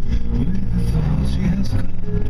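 Steady engine and road rumble inside a moving car, with a voice over it.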